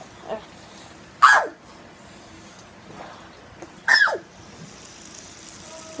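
Fidget spinner spun as hard as possible, giving a faint steady whir. Twice a short loud sound falls sharply in pitch, once about a second in and again about four seconds in.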